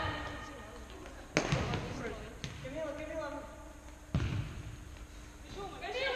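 A futsal ball being kicked and bouncing on the hard indoor court: two loud, echoing thuds, one about a second and a half in and another about four seconds in, with players' shouts between them in the large hall.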